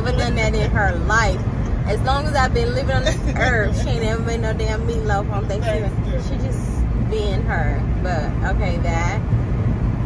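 A steady low road rumble of a car driving, heard from inside the cabin, with a voice going on over it most of the time.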